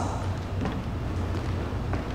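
Soft footsteps of sneakers stepping on and off a plastic aerobics step platform and a hardwood floor, a few light taps in the first second, over a steady low hum.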